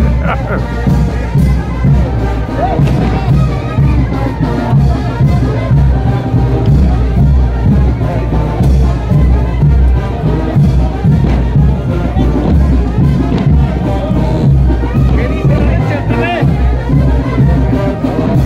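Brass band playing a son de chinelo, loud and continuous with a steady driving beat, over crowd noise.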